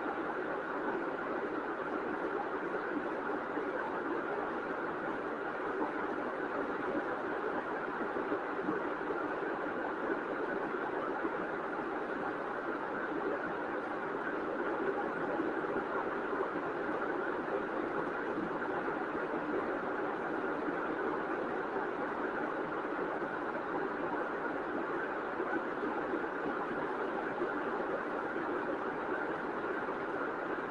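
Steady, even background noise with no pitch or rhythm, unchanging throughout.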